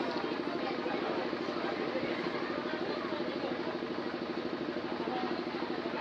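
A steady low mechanical hum with a fast, even pulse, under faint murmuring voices.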